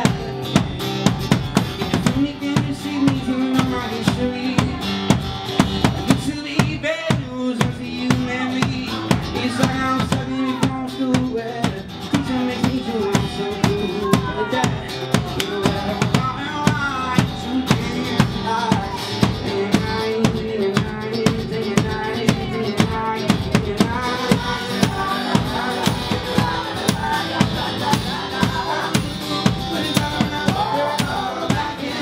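Live acoustic band playing: a strummed acoustic guitar over a steady drum beat of about two hits a second, struck on a large drum.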